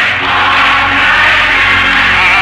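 Church music with singing: voices and instruments holding sustained notes over a steady bass.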